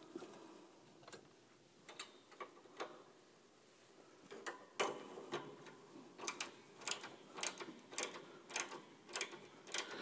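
Ratchet tool on a piano tuning pin clicking as it is turned, winding the new string's wire onto the pin and drawing the string tight. A few scattered clicks at first, then from about halfway in a steady run of clicks, about two or three a second.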